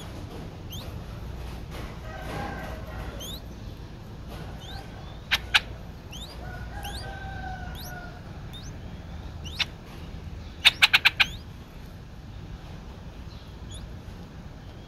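Small birds calling: faint, high, upward-flicking chirps repeat throughout. Sharp, loud call notes come twice about halfway, once more a little later, then in a quick run of five, which is the loudest moment.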